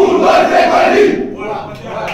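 A football team's pre-match huddle shout: a group of players yelling together in one loud burst about a second long, then fading into scattered voices.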